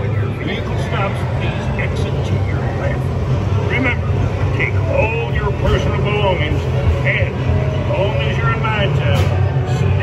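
Radiator Springs Racers ride car rolling along its track with a steady low hum, under indistinct voices.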